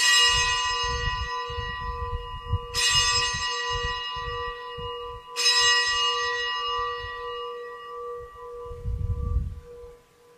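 A bell struck three times, about two and a half seconds apart, each stroke ringing out bright and slowly fading. It rings for the elevation of the chalice at the consecration of the Mass.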